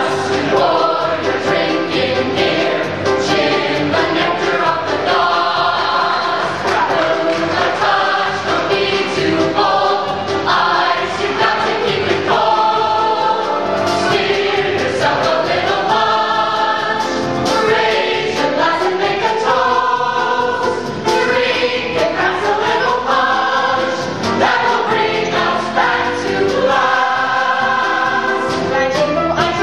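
A large mixed choir singing a show tune in harmony, with piano and drum-kit accompaniment.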